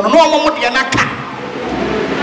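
A woman speaking into a handheld microphone over a PA for about a second, then a second of steady, indistinct room and crowd noise in the hall.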